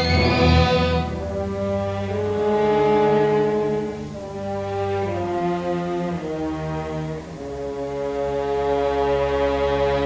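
Orchestral film score: slow, held brass chords that move to new pitches every second or so, swelling and dipping in loudness.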